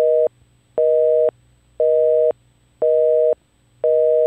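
Telephone busy signal: a steady two-note tone beeping on and off about once a second, five beeps in a row, the North American busy-line pattern.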